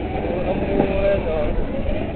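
A person's voice with a steady low rumble underneath.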